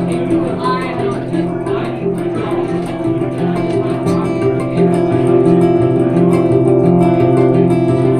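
Acoustic guitar and mandolin playing a folk instrumental passage together, with a steady repeating pattern of low guitar notes under the plucked melody.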